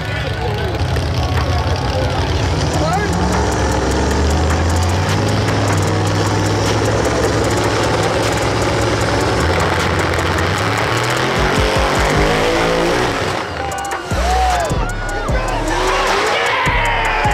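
Two drag-race cars' engines revving hard at the start line, rising in pitch and then held high for several seconds. The sound breaks up near the end as the cars launch and pull away down the strip, with the crowd shouting.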